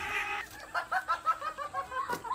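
A hen clucking in a quick run of short clucks, about five a second, starting about half a second in after a brief rustling noise.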